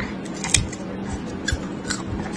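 Close-miked eating sounds: biting and chewing a small sauce-coated boiled egg, with a few sharp wet mouth clicks, the loudest about half a second in. A steady low hum runs underneath.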